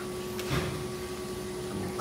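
A brief rustle of thin hydrographic printing film being handled and smoothed flat, about half a second in, over a steady electrical hum.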